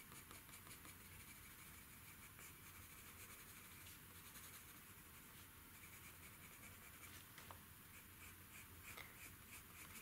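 Faint, quick scratching of a green coloured pencil shading on paper in many short strokes.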